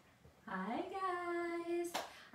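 A woman's voice calling out a long, sung-out greeting: it starts about half a second in, rises in pitch and holds one note for more than a second. It ends in a single sharp hand clap.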